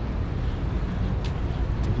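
Steady city street traffic noise, a low hum of car engines and tyres with a car close by.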